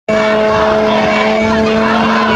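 A plastic horn blown in one long, steady, low note over the voices of a crowd.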